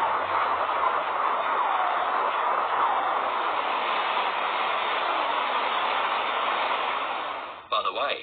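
Recreated "sound of a black hole": a steady, even rushing noise with no distinct tones, centred in the middle range. It stops abruptly just before the end.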